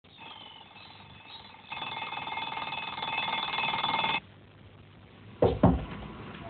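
Electric bell ringing loudly and steadily for about two and a half seconds and cutting off suddenly, after a fainter ring at the start. About a second later come two loud, low sounds in quick succession.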